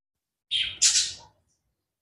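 A short, loud hissing mouth sound made right at a lavalier microphone, in two quick parts about half a second in.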